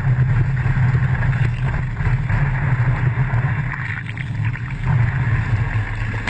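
A motor running at a steady pitch over rushing water and wind noise on the microphone.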